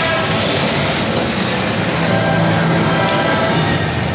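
Loud, steady background din of a large exhibition hall during stand setup, with a few faint steady tones in the noise.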